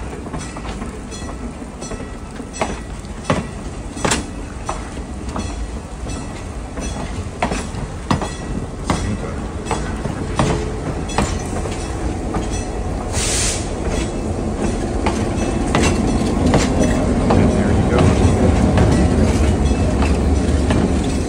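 Passenger cars of a train rolling past at low speed, the wheels clicking irregularly over the rail joints. There is a brief hiss about thirteen seconds in, and a diesel locomotive's engine rumble grows louder near the end as the locomotive comes by.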